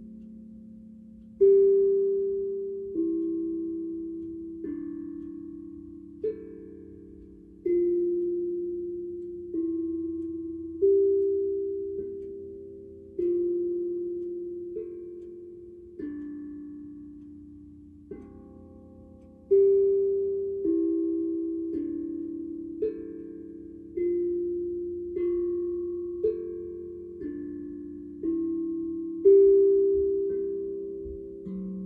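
Steel tongue drum struck with a mallet, one note about every one and a half seconds, each ringing on and slowly fading under the next, in a slow, wandering melody over a few notes.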